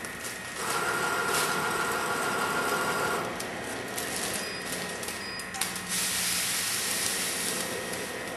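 A weigh-type powder filling machine on a sugar run. Its feeder runs with a steady hum for about two and a half seconds as sugar fills the weigh hopper. Later a click is followed by a rushing hiss of about two seconds as the weighed charge is released.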